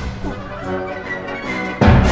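Symphony orchestra playing: a softer stretch of held notes, broken near the end by a loud accented full-orchestra chord.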